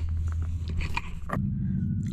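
A few light knocks and handling noises from a hand-held phone camera being moved, over a steady low hum.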